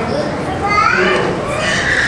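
Voices in a hall. A man's amplified speech breaks off, and high-pitched children's voices rise over it near the middle and again near the end.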